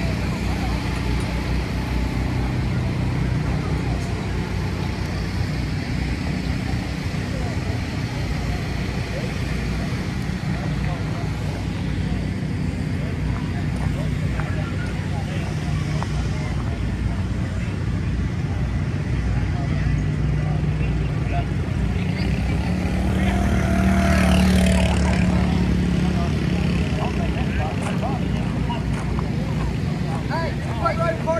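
Outdoor crowd and engine noise: voices talking in the background over a steady low engine hum. About three-quarters of the way through, a louder engine swells and passes, rising and then falling in pitch.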